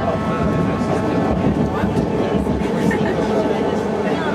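BART train running at speed, heard from inside the passenger car: a steady rumble of wheels on rail with a faint high whine.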